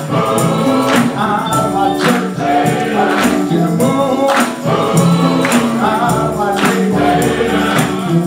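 Men's gospel choir singing with instrumental backing: held sung notes over a steady bass line and a regular percussion beat.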